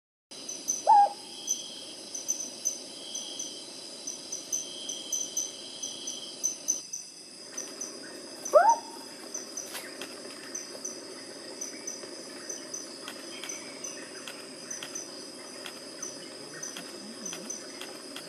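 Sunda frogmouth giving a short call that sweeps sharply upward in pitch, twice: about a second in and again about eight and a half seconds in. Underneath runs a steady night chorus of crickets and other insects, with rapid high chirping.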